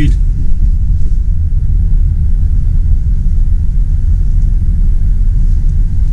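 Steady low rumble of a car's engine and road noise heard from inside the moving car.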